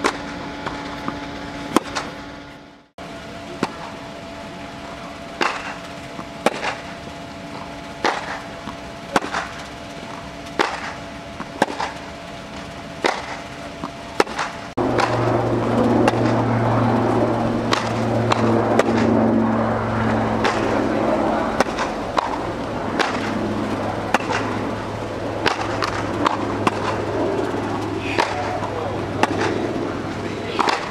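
Tennis ball struck by racket strings in a baseline rally, a sharp pop about every second or so, with bounces on the court between hits. A steady low hum starts suddenly about halfway through and stays under the hits.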